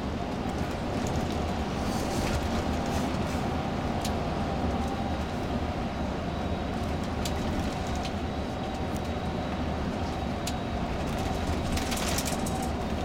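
Cabin noise of a moving tour coach: a steady drone of engine and tyres on the road, with a faint constant whine and a few light clicks or rattles.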